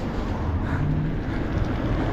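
Steady rumble of riding a bike along a street, with wind and road noise on the handlebar-mounted phone. A low steady hum comes in partway through.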